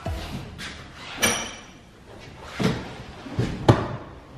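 A few sharp clunks and knocks inside a car cabin, the loudest near the end, with rustling between them, as people climb into the seats and a front seat backrest is tipped and set back upright.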